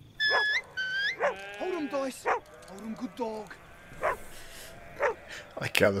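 Sheep bleating on a film soundtrack: two short, high calls rising at the end, then several overlapping bleats, with a few sharp clicks later on.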